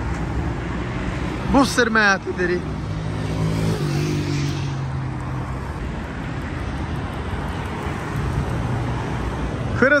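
Road traffic and nearby car engines: a steady low rumble, with one engine's hum dropping in pitch about four seconds in. A brief voice is heard near two seconds in.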